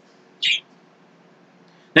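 A short breathy hiss from the man, about half a second in, against otherwise quiet room tone.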